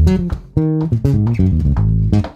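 Electric bass guitar played fingerstyle: a funky, syncopated bass line of short separate notes, several a second.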